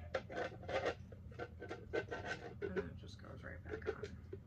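Hands handling a hollow, hand-painted skull-shaped box that opens up: a quick run of short scrapes, rubs and light taps as it is turned and its parts are worked.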